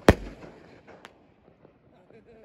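Consumer firework artillery shell bursting overhead: one loud bang just after the start that dies away, then a single fainter crack about a second in.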